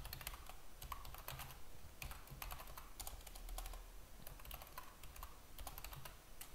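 Computer keyboard being typed on: a faint, irregular run of key clicks as a command is entered.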